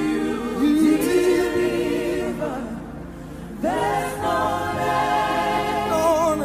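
Gospel worship song: several voices sing long held notes that glide in pitch over a steady low backing. The singing fades away about two and a half seconds in and comes back strongly about a second later.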